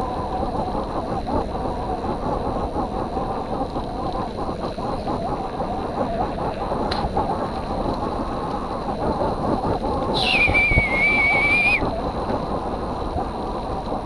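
Mountain bike rolling fast over a dirt trail: a steady rumble and rattle of tyres and frame mixed with wind on the camera. About ten seconds in, a high, steady squeal lasts nearly two seconds.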